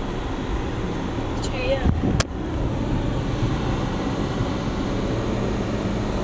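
Steady road and engine rumble heard inside a moving car's cabin, with one sharp click about two seconds in.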